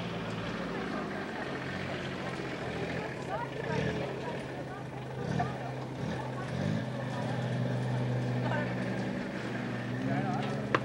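Scattered distant voices over a steady low hum that holds one pitch throughout, with a few louder voices about halfway through.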